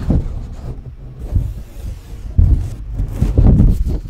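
A sheet of paper handled and flexed right up against the microphone, giving low rubbing rumbles with a few crisp crackles, in irregular swells that are loudest in the second half.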